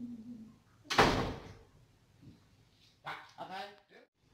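A sudden loud bang about a second in, a door slammed shut. Near the end a woman's voice breaks into sobbing cries.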